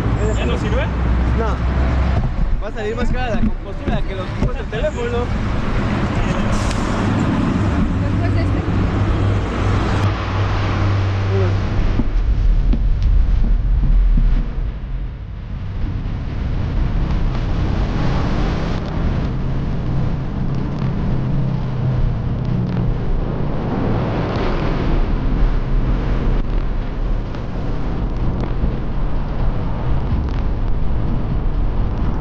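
Road noise from a bike-mounted camera: passing traffic and a steady low wind rumble on the microphone while riding downhill. Indistinct voices are heard in the first few seconds.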